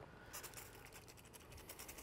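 Near silence with faint scratchy handling sounds as wet paint protection film is pressed and tacked down by hand onto a car mirror, with a small click right at the start.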